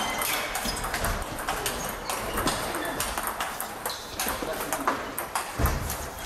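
Table tennis balls clicking off bats and tables from several matches at once in a large hall, an irregular patter of light taps.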